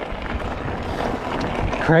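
Rushing noise of wind on the microphone with tyres rolling over loose gravel as an electric mountain bike coasts down a dirt track.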